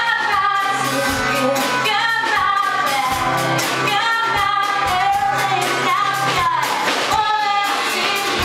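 A woman singing a pop-rock song live, accompanied by her strummed acoustic guitar and a drum kit keeping a steady beat.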